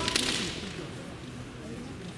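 Kendo fencers' drawn-out kiai shouts, wavering in pitch, in a large hall. A loud sharp crack right at the start fades out within half a second.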